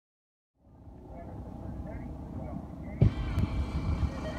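Faint chatter of spectators fading in over outdoor background noise, with one sharp knock about three seconds in.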